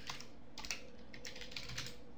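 Typing on a computer keyboard: a quick, uneven run of keystroke clicks, several a second.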